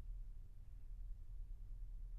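A quiet pause between movements of a recorded classical oboe concerto. No instruments play; only a low, steady rumble of background noise remains.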